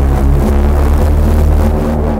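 A loud, held bass synth note in an electronic house track, deep sub-bass with steady overtones, that starts suddenly just before and begins to die away at the end.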